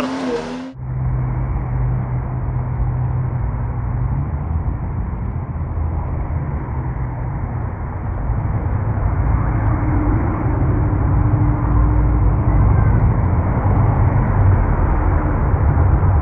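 Traffic noise from a procession of 4x4 trucks and SUVs driving along a city street: a steady, muffled rumble of engines and tyres that grows louder in the second half.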